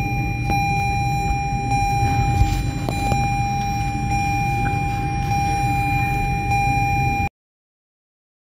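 A steady high-pitched electronic tone over a low hum, with a few light clicks, cutting off suddenly near the end.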